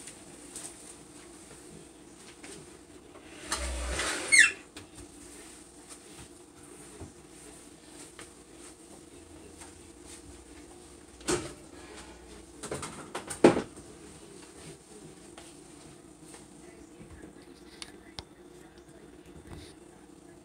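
Kitchen cleanup at a counter and sink: a short rustling rush about four seconds in and two sharp knocks of items being handled, about two seconds apart past the middle, over a faint steady hum.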